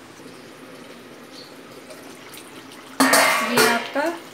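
A faint steady hiss, then about three seconds in a metal spatula scrapes and clatters loudly against the steel kadhai as the chicken curry is stirred.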